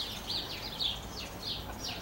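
A bird chirping repeatedly in the background, short high notes that sweep downward, about two a second.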